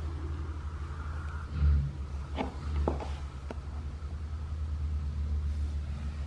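A few light clicks of a woman's high-heeled pumps tapping on a laminate floor as she steps, with a dull thump about a second and a half in, over a steady low rumble.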